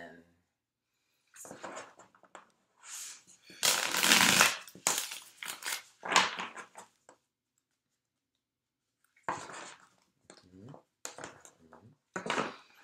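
A deck of tarot cards being shuffled by hand: bursts of cards rustling and slapping together, the loudest about four seconds in, a pause of about two seconds, then a few shorter bursts near the end as the deck is squared.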